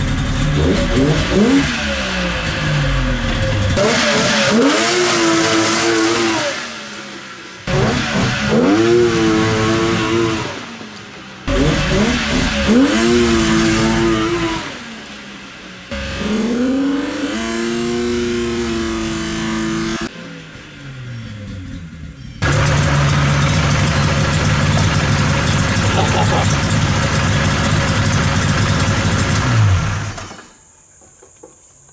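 Polaris XLT 600 three-cylinder two-stroke engine in a go-kart, revved hard again and again, each rev rising sharply in pitch and then falling back. Near the end it holds a long steady full-throttle run, then drops away.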